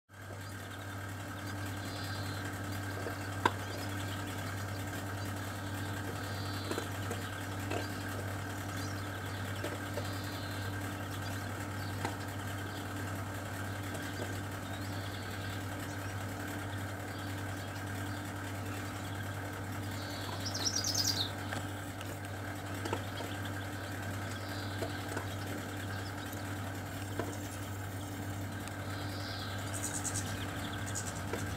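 A steady low mechanical hum, with faint short calls of finches every few seconds and a louder burst of quick high notes about 21 seconds in. A few soft clicks.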